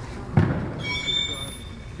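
A single dull thump about half a second in, followed by a brief, faint high-pitched squeak.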